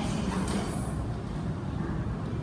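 Steady low background rumble of room noise.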